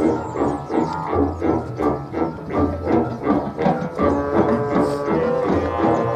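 A high school marching band playing: a quick, even pulse of several beats a second over repeated low bass notes. From about four seconds in, held notes fill out the middle of the sound.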